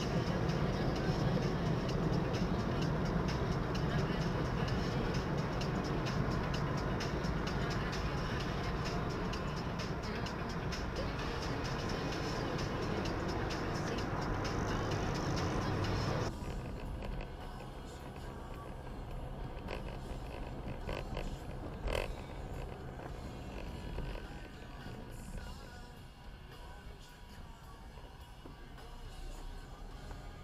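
Car interior sound at motorway speed, about 90 km/h: steady road and engine rumble with music playing. About halfway through the rumble cuts off abruptly, leaving quieter music, with a single sharp click a few seconds later.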